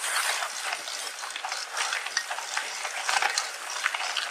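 Mountain bike tyres rolling fast over a sandy, gritty dirt track: a steady crunching hiss dotted with many small irregular clicks and rattles from grit and the bike.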